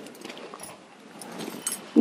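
Cloth rustling and brushing as a saree is spread out and smoothed flat by hand, with a few faint light clicks.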